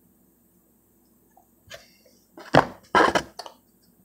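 Handling of plastic toploaded trading cards: a few faint clicks, then two short, louder clattering rustles about two and a half and three seconds in, as cards in rigid plastic holders are moved and set down.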